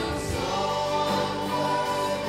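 A live worship band playing, with several voices singing together over acoustic and electric guitars, keyboard and drums.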